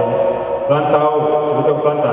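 A man talking into a hand-held microphone over a PA, his voice echoing in a large hall.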